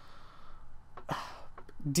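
A man's short, audible intake of breath about a second in, between stretches of his talking.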